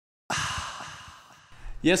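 A long breathy sigh that starts suddenly and fades out over about a second. A low hum comes in near the end as a man begins to speak.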